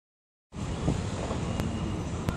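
Half a second of dead silence at an edit, then steady outdoor city noise from high above: a low traffic rumble with wind buffeting the microphone.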